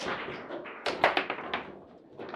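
Table football in play: a quick run of sharp hard knocks and clacks from the ball, the plastic players and the rods, busiest about a second in.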